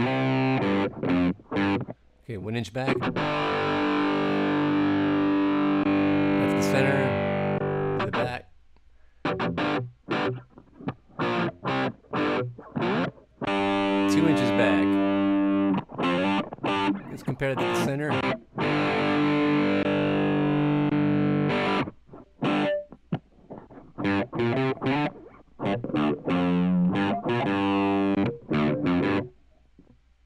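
Distorted electric guitar through a small Roland Micro Cube amp, heard as playback of a microphone recording. Bursts of short, choppy chords alternate with chords held for a few seconds.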